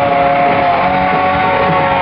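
A live rock band playing loud, with a long held note that sounds steady for most of the two seconds.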